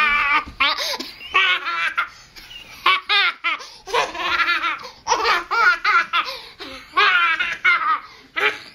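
Toddler laughing in repeated high-pitched peals, with short breaks between them.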